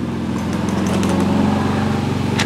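Golf cart passing close by, its motor a steady low drone that swells a little and then eases toward the end.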